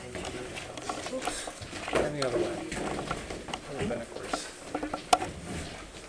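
Indistinct conversation, no words clear enough to make out, with scattered light clicks and knocks; one sharp click stands out about five seconds in.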